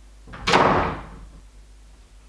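A door slammed shut once, about half a second in, the bang dying away within about a second.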